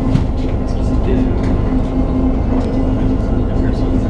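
Inside a moving city bus: a steady engine and road rumble with a pulsing hum and scattered light rattles from the cabin.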